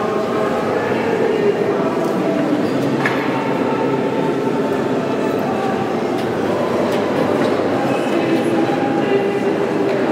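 A choir of many voices singing together, holding overlapping sustained notes.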